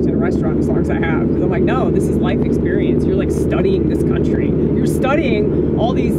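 Steady low rumble of a moving car heard from inside the cabin, with a voice going on over it.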